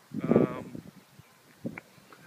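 A single brief, wavering vocal sound lasting about half a second, just after the start.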